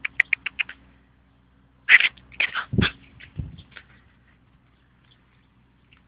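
Border collie whimpering and yipping in short sounds: a quick run of brief cries at the start, then a louder cluster about two seconds in that trails off.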